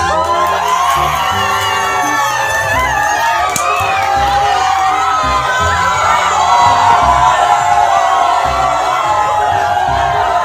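A crowd shouting and cheering, many voices at once, loud and unbroken, with music playing underneath.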